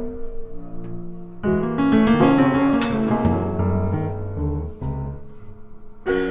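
Instrumental jazz: piano chords and notes with low bass notes beneath. It starts sparse and quieter, and a fuller passage of many notes comes in about a second and a half in, with long low bass notes in the second half.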